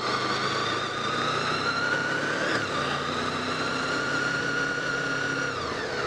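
Honda VFR800's V4 engine running under way at a steady speed, with wind and road noise; its pitch rises a little about two seconds in, holds, then falls near the end as the bike slows.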